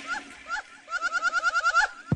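A short, pitched chirping sample in a hip-hop track with the beat dropped out: a few single chirps, then a rapid stutter of about eight a second before the beat comes back in.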